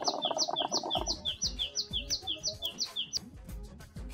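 Water gurgling in the base of a hookah as it is drawn on, for about the first second. A bird repeats a high two-note chirp about three times a second, stopping just after three seconds.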